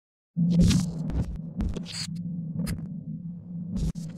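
Intro sound effect for a logo: a steady low hum that starts abruptly, overlaid with several short whooshes and sharp clicks.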